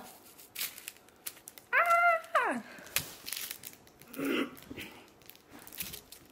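Package wrapping crinkling and rustling as it is torn open and handled. About two seconds in comes one loud, brief, high-pitched whine that drops in pitch at its end, and a short low murmur follows a couple of seconds later.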